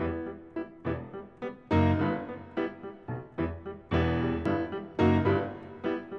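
Background music: piano chords struck one after another, each ringing and fading before the next, with deep bass notes under the louder ones.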